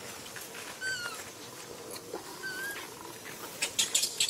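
Two short, high calls from a macaque: the first about a second in falls slightly in pitch, the second a little past halfway rises. A few dry clicks or rustles come near the end.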